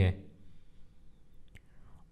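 A man's voice ends a word at the very start, then a pause of near silence with a couple of faint clicks about one and a half seconds in.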